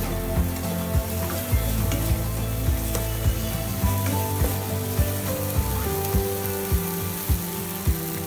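Tomato and spice masala sizzling in a nonstick pan while a spatula stirs it, with short scrapes and taps against the pan. Soft background music with held notes plays underneath.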